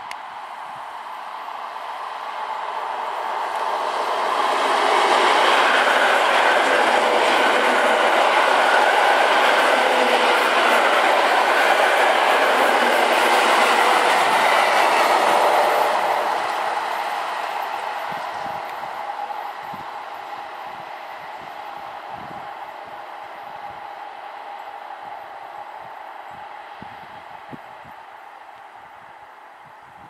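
Two coupled class EN57 electric multiple units passing by on the rails: the sound builds over about five seconds, stays loud for about ten seconds as the train goes past, then fades away slowly as it recedes.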